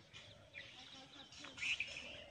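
Birds chirping faintly in short, scattered calls, with a few louder chirps near the end.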